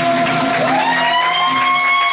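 A man's sung voice holding one long note that slides up in pitch about half a second in and holds at the higher pitch, over acoustic guitar: the final held note of the song.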